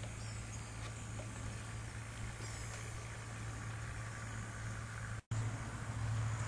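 A steady low mechanical hum under outdoor background noise, with a few faint high chirps. The sound drops out suddenly about five seconds in and comes back louder.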